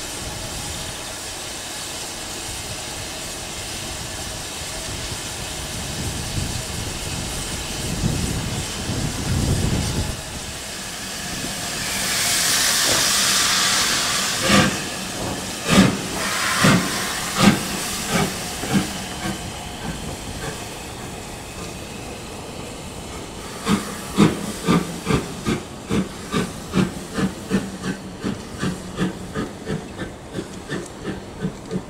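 LMS Jubilee class three-cylinder 4-6-0 steam locomotive 45562 Alberta hissing steam while standing, then a loud rush of steam as it gets under way. Its exhaust beats follow, about one a second at first, then quickening to about two a second near the end as it pulls away.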